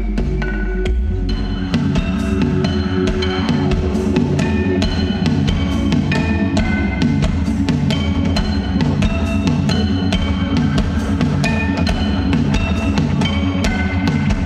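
Live band playing an instrumental passage without vocals: a steady drum beat and deep bass under a run of short, bright notes that hop from pitch to pitch.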